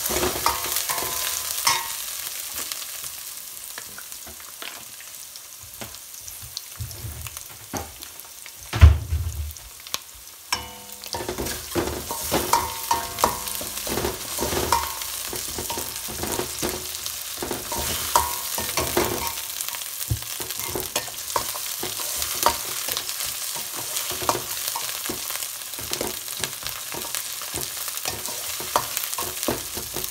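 Chopped onion, green chillies and ginger-garlic paste sizzling in hot oil in a stainless-steel wok, with a steel ladle scraping and clinking against the pan as the mix is stirred. A single heavy thump about nine seconds in is the loudest sound.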